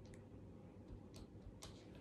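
Near silence: room tone with a low hum and three faint, irregular clicks.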